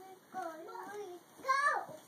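A toddler's wordless, sing-song babbling in short phrases, ending in a louder, high-pitched vocal that rises and then falls.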